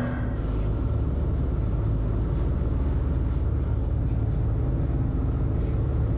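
Motorboat running at speed: a steady, loud low rumble of engine and wind mixed with the rush of water from the wake.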